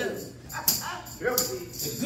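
Two short, sharp vocal calls, the first about half a second in and the second about a second and a half in, each dropping in pitch.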